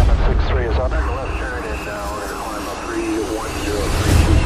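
Film soundtrack sound effects: a sudden jet rush at the start, then a voice over fading jet engine rumble.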